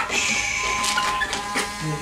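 Electric grooming clippers humming steadily, with a brief high hiss early on and a few sharp knocks while a Yorkshire Terrier struggles on the grooming table. A man's voice starts just before the end.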